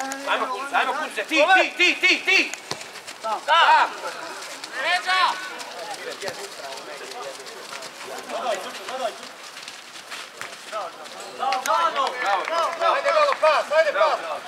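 Men shouting across an open football pitch. There are short loud calls about a second in and around four and five seconds, and a longer run of shouting near the end.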